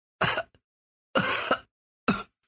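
Two short vocal sounds about a second apart, the second one longer; they sound like a person's voice but not like ordinary speech.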